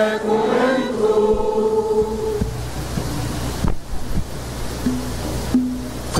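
Voices singing a liturgical chant in long held notes, ending about two and a half seconds in. A steady wash of noise follows.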